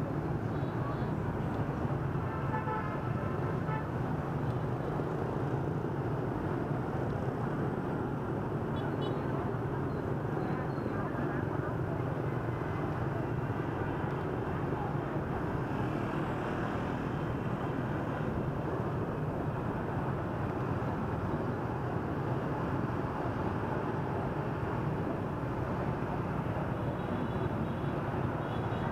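Steady traffic noise of dense motorbike and scooter traffic on a city street, with engines running and tyres on the road, heard from among the traffic.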